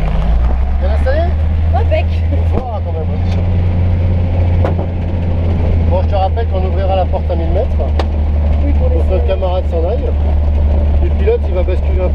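A small propeller plane's engine and propeller droning loudly and steadily inside the cabin. The drone grows louder and deeper right at the start, with voices talking over it and a few sharp clicks.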